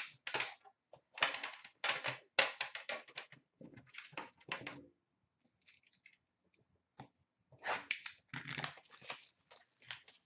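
A metal trading-card tin being worked open, with a run of scraping and clattering handling noises over the first few seconds. Near the end comes a second burst of crinkling and tearing as the plastic wrap is pulled off the card box inside.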